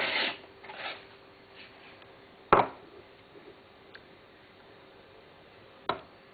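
Coffee gear being handled on a kitchen bench: a short scraping rub at the start and another about a second in, then a sharp knock about two and a half seconds in and a smaller knock near the end.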